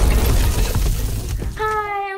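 A loud, sudden crash of noise fades away over about two seconds, an edited sound effect in a video intro. Near the end a high voice begins a drawn-out greeting.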